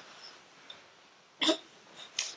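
A single short vocal sound from a person, like a hiccup, about one and a half seconds in.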